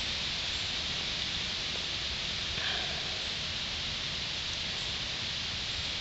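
A steady, even hiss of background noise with no distinct event.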